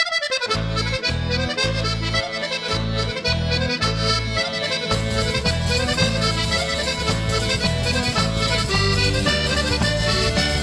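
Accordion-led folk dance music with a pulsing bass line, starting abruptly and filling out about five seconds in.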